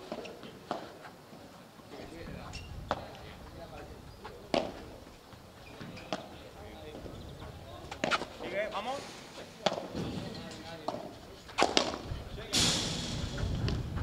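Padel rally: a ball struck with solid padel rackets and bouncing off the court, a series of sharp hits a second or two apart, closer together near the end, with voices in the background. A rush of noise sets in near the end.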